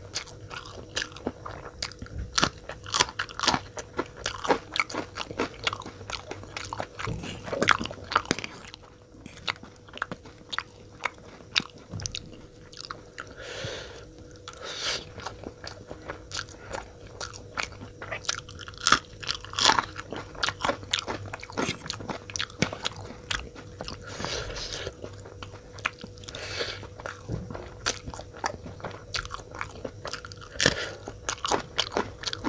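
Close-miked eating of Maggi instant noodles with bites into a raw green chilli: a steady run of sharp crunches and chewing clicks. A faint steady hum lies underneath.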